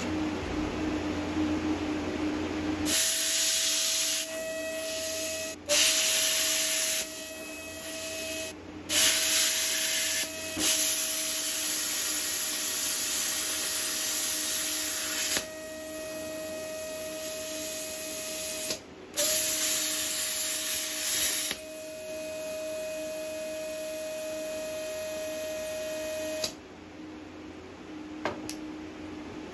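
Handheld plasma cutter cutting steel saw-blade plate: the arc starts about three seconds in with a loud hiss and a steady whine, drops out briefly a few times as the torch is pushed and pulled along the cut, and stops shortly before the end.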